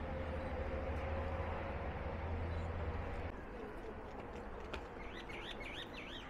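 Outdoor ambience with a low steady rumble that cuts off abruptly a little over three seconds in; near the end a bird gives a quick run of about five high, rising-and-falling chirps.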